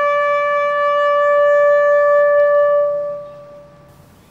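A bugle call ending on one long held note, clear and loud, which fades out about three seconds in.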